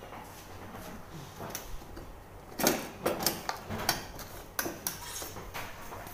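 Irregular light clinks and knocks of medical supplies being handled on a stainless steel trolley, a quick cluster of them starting about two and a half seconds in.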